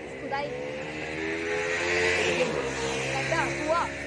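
A motor vehicle's engine running as it drives past, loudest about halfway through, its pitch dropping slightly as it goes away.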